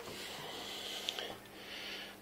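A soft, breath-like hiss in two stretches, typical of a person breathing close to a handheld microphone, with a small click about a second in and a faint steady hum underneath.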